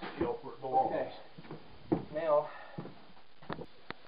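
Indistinct voices talking, with a few sharp knocks and clicks from equipment being handled: one loud knock about two seconds in and two more near the end.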